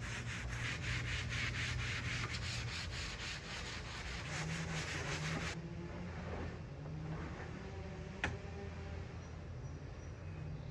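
Hand sanding with a 220-grit sanding block over dried shellac-based primer on wooden furniture, lightly knocking down imperfections before painting: quick back-and-forth rasping strokes, several a second. About five and a half seconds in, the sound drops to a fainter, less regular rubbing, with a single click near the end.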